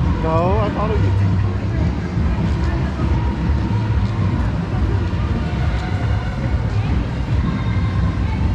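Pickup truck engine running with a low, steady rumble as the truck rolls slowly along the street, under a crowd's talk. A short rising call sounds about half a second in.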